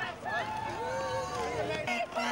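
Protesters' voices shouting a chant in long, drawn-out high-pitched calls that slide up and down.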